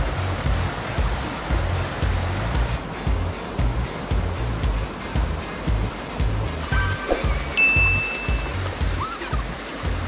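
Mountain stream rushing over boulders and small cascades, with background music and a steady low beat under it.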